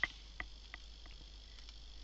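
A few faint, sharp clicks of a computer mouse, about five in the first second and a half, the first the loudest. Behind them runs a faint, steady high-pitched whine.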